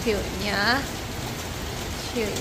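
Steady heavy rain falling, with one short vocal sound that glides in pitch in the first second.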